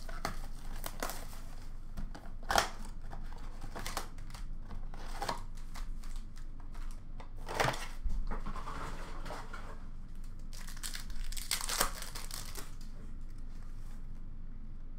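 Trading-card packs being opened by hand: steady crinkling of the wrappers with a sharp tearing rip every few seconds, four of them louder than the rest, and cards being shuffled.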